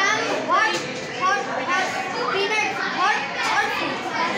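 Children talking: a boy speaking in a steady run of words, with other children's voices behind him.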